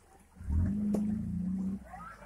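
Off-road 4x4's engine revved hard at a steady high pitch for about a second as the vehicle climbs the rocks and tips onto its side, then cutting off suddenly near the end.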